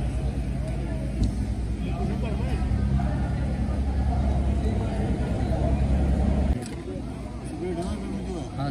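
A steady low engine hum running under nearby voices, which stops suddenly about six and a half seconds in.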